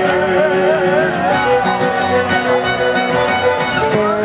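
Live acoustic band music in a Greek folk style: a wavering, vibrato melody line, most likely a violin, over acoustic guitar and other strings, with a short note repeated steadily through the middle.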